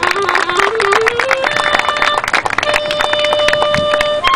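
Solo clarinet playing a short wavering stepwise phrase, then holding longer, higher notes from about a second and a half in, over a dense patter of audience clapping.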